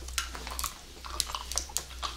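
Close-miked mouth sounds of bubble gum being bitten into and chewed: a quick run of wet clicks and smacks.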